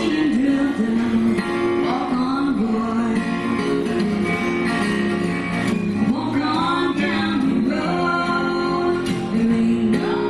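Two acoustic guitars played together in a live duet, with voices singing over them.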